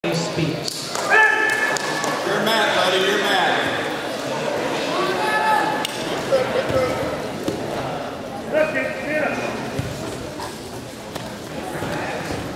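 Shouted voices of coaches and onlookers calling out in a large gymnasium, coming in several bursts, with a few sharp knocks and thuds.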